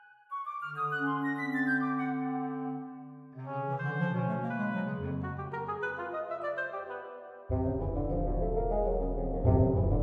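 Orchestral music played on sampled orchestra instruments: slow, held chords, a new one entering about a third of a second, three and a half, and seven and a half seconds in, the last with a heavy low bass and louder.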